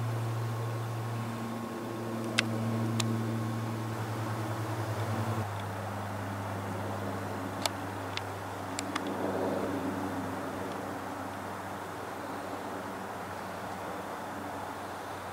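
Four turboprop engines of a Lockheed Martin AC-130J Ghostrider droning overhead. The low propeller hum throbs for a moment about four seconds in, then shifts slightly in pitch. A few sharp clicks come through, the first the loudest.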